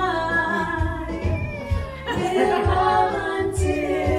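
Female voices singing a song in long held notes over backing music with a steady low beat.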